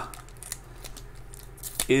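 Foil trading-card pack being handled and worked open by hand: quiet crinkling of the foil wrapper with a few light ticks.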